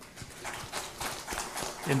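Handheld microphone being handled: an irregular run of light clicks, taps and rubbing.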